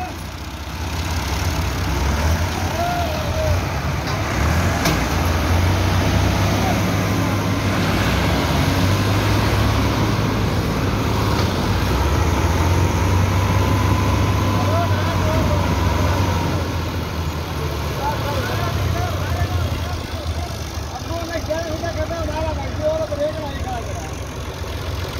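Tractor diesel engines working hard under heavy load as one tractor, chained to a tractor stuck in sand, tries to drag it out. The engine sound swells about two seconds in, holds strongly until about sixteen seconds, then eases off: the pull is failing.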